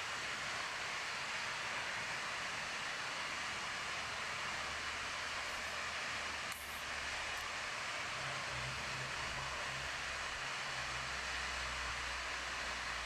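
Steady rushing of fast river water, an even hiss throughout with a brief dip about six and a half seconds in.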